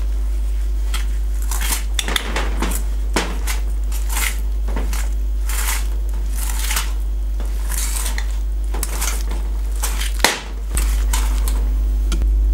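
Wire balloon whisk scraping and clinking against a stainless steel bowl, stirring a thick almond cream of almond powder, butter, sugar and yogurt in irregular strokes about once or twice a second. A steady low hum runs underneath.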